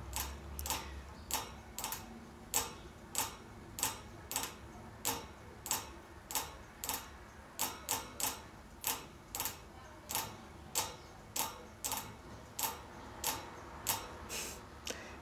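Light sharp clicking or tapping, repeating a little under twice a second at a slightly uneven pace, with one quick pair of clicks about halfway through.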